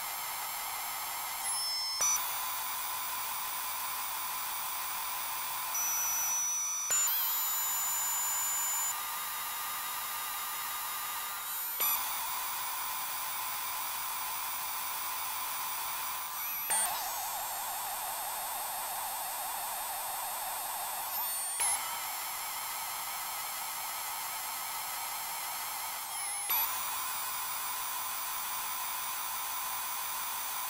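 Experimental electronic drone music: layers of high, steady synthesizer tones with no bass, shifting abruptly about every five seconds, each change marked by a short, louder blip.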